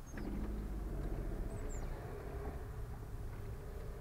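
Low, steady rumble of a car's engine and tyres heard from inside the cabin in slow traffic. It grows louder just after a short click at the start.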